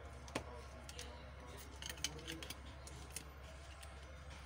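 Scattered light clicks and taps of a Xiaomi Redmi 6A's opened mid-frame and loose plastic parts being handled, over a low steady hum.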